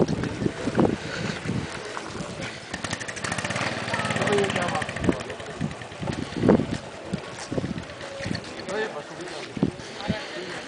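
Gusty wind buffeting the microphone in a snowstorm, with irregular low thumps, and people's voices in the background.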